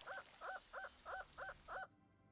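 Crow cawing: a faint run of six short, evenly spaced caws, about three a second.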